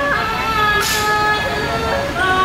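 Thai classical piphat ensemble music accompanying khon masked dance: a reedy wind instrument holds long steady notes that step from one pitch to another, with a short crash of high noise about a second in.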